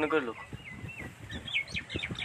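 A bird chirping: a run of short, high, quick chirps, some dipping and some rising in pitch. A man's voice trails off just at the start.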